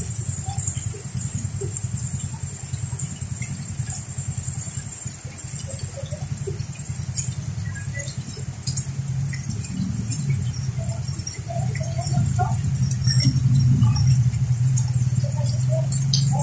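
Heavy rain falling on an umbrella and the wet street, a dense steady wash of drops. A motorcycle tricycle's engine grows louder in the last few seconds as it passes.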